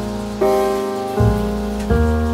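Background piano music: three soft notes or chords struck about every 0.7 s, each ringing and fading, over a faint hiss of rain.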